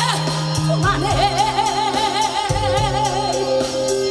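Woman singing a Korean ballad live into a microphone over a recorded backing track played through the stage PA, with a steady beat. About a second in she holds one long note with vibrato.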